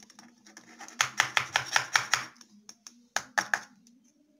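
A quick run of light taps and clicks at the neck of a glass bottle as baking soda is shaken into it, several a second for about a second, then a few more near the end.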